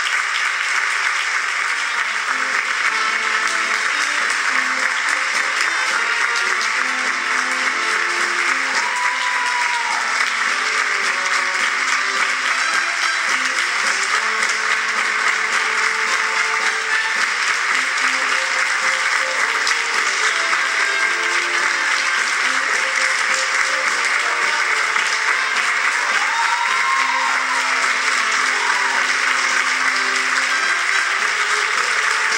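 A theatre audience applauding steadily through the curtain call, with the bows music playing underneath the clapping.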